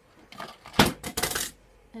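Small makeup items knocked over and falling, clattering onto a hard surface: scattered knocks, one sharp hit about a second in, then a quick rattle that stops about halfway through.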